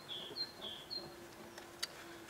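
A garden songbird singing a repeated two-note phrase, a short higher note then a lower one, a few times over, stopping about a second in. A faint steady hum lies underneath, and there is a single sharp click near the end.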